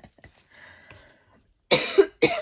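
A woman coughs once, a sudden loud cough near the end, after a mostly quiet stretch.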